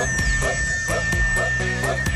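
Ensemble playing an upbeat folk-style instrumental break with a steady beat of about three strokes a second, and one long high note held over it.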